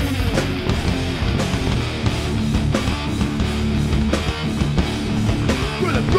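Rock band playing live: electric guitar, bass and drums in an instrumental passage, with no vocals.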